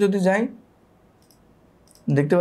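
A man's voice holds one drawn-out word, then a pause with a couple of faint computer mouse clicks about a second and a half in and near the end.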